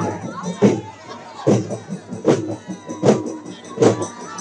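Drum beats at a steady pace of a little over one hit a second, over a crowd of voices shouting and cheering.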